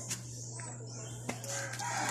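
A rooster crowing, faint, with its pitched call showing near the end.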